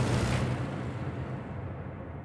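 Dramatised sound effect of a plane coming down hard: a deep rumble dying away. Its hiss drops out about half a second in.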